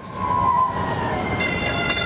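Light rail train running on street tracks, with a steady high-pitched wheel squeal setting in about halfway through.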